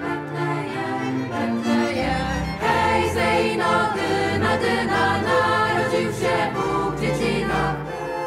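Choir singing a Polish Christmas carol, accompanied by a small ensemble of strings, accordion and clarinet; the music swells louder about two and a half seconds in.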